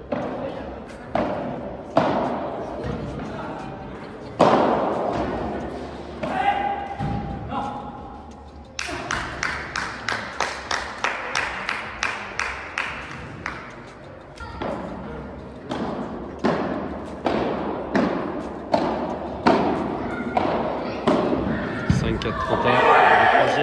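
Padel being played in an echoing indoor hall: sharp knocks of racket hits and the ball striking the glass walls and court, irregular at first, then a quick regular run of knocks in the middle.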